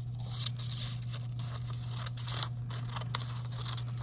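Scissors snipping through a printed paper strip, several irregular cuts, over a steady low hum.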